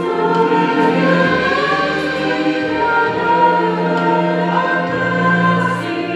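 A small church choir singing with long held notes, under a conductor's direction.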